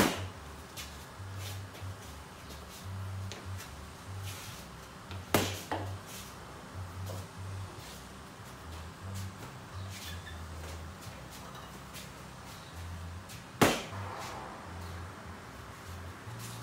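Boxing gloves landing short punches on a heavy punching bag, an irregular run of dull thuds with a few sharper, louder smacks: one at the start, two close together about five seconds in, and one near the end.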